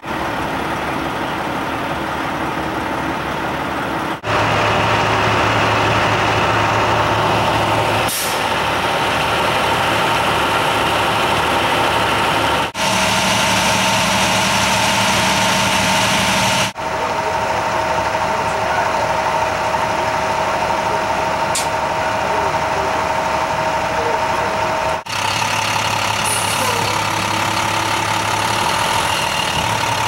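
Vehicle engines idling steadily, with the sound changing abruptly several times as the footage cuts between shots. In the later shots this is a fire department ambulance's engine idling.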